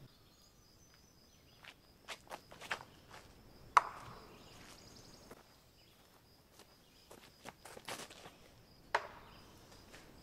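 Footsteps on a wooded disc golf course, with scattered sharp clicks and knocks. The loudest knock comes about four seconds in, with a short ringing tail, and another strong one comes near the end. A faint steady high-pitched hum runs underneath.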